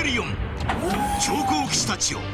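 Soundtrack of a toy commercial: voices over music, with one held tone lasting about a second in the middle.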